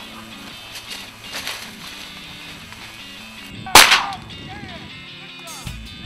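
A single loud shotgun blast about two-thirds of the way in, sharp with a short ringing tail, over background music.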